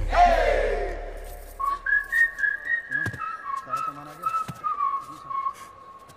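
A whistled tune: clear single notes stepping up and down, beginning about one and a half seconds in and held to the end. Just before it, a falling swoop sound in the first second.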